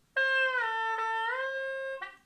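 Hulusi (Chinese gourd free-reed flute) playing a sustained note that glides down to a lower note and then glides back up: a slow finger slide from do down to la and back up to do.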